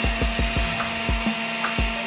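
Electric juicer motor running with a steady whine while an apple is pushed down the feed chute and ground up, with repeated low thumps.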